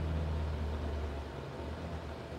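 A low steady rumble that fades about a second and a half in.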